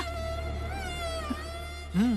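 A held high-pitched tone with overtones, wavering gently in pitch, sustained as a drone in the film's background score over a steady low hum.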